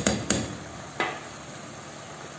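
A metal spoon knocking sharply against a non-stick pan three times while paprika is tapped off it: two knocks close together at the start and one about a second in.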